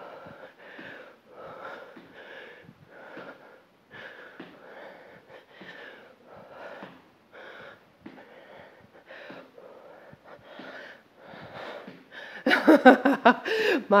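A woman breathing hard in short, rhythmic huffs, about two a second, from the exertion of squat jumps.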